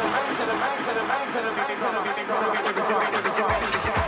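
House music mix in a breakdown: a voice over hi-hats with the bass and kick drum dropped out. The bass and kick come back in near the end.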